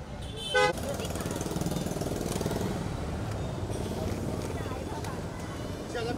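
A car horn beeps once, briefly, about half a second in, the loudest sound; after it a car engine runs close by as the car pulls up, with voices over it.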